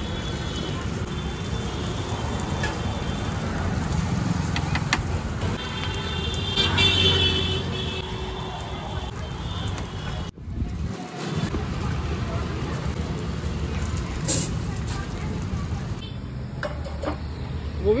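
Street traffic noise with passing vehicles and voices in the background, cut by several short horn toots in the first half. The sound breaks off briefly just past the middle.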